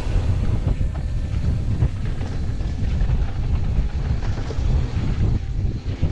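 Commencal Clash mountain bike descending a dry dirt and gravel trail at speed: a steady, loud low rumble of wind on the microphone and tyres rolling over loose dirt.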